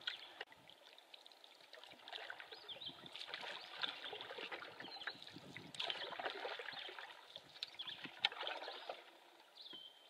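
Canoe paddle strokes in shallow water, with splashing and dripping that come in irregular surges every second or two. There is one sharp knock about eight seconds in.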